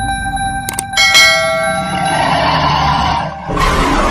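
Subscribe-button animation sound effects: a couple of mouse clicks, then a bright notification-bell chime that rings and fades. A rushing burst of noise starts near the end.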